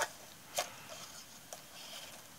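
Paper handled on a canvas: a printed paper strip and a paper butterfly pressed and slid into place by hand, giving two light taps, the second about half a second in, then faint rustling.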